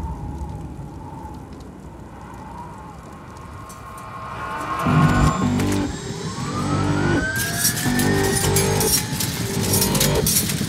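Film soundtrack: a low rumble fades away, then from about five seconds in a pulsing rhythm with rising tones swells up.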